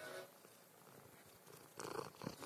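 Domestic cat purring close to the phone's microphone, then a loud rustle near the end as the cat's fur rubs against the phone.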